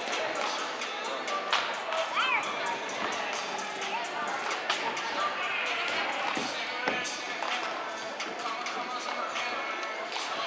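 Cheerleading routine music playing in a gym, mixed with shouting voices and many sharp hand claps from the squad. A few short high squeals come about two seconds in.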